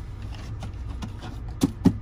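Two sharp plastic clicks about a fifth of a second apart, near the end, as the lid of a plastic bucket on a shelf is handled. A steady low hum runs underneath.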